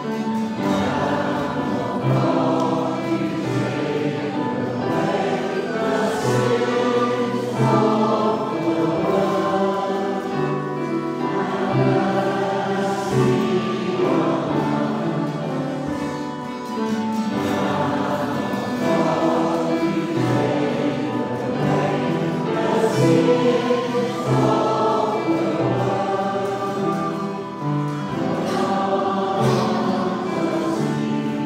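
A choir singing a sacred piece with accompaniment, its held low notes sounding under the voices without a break.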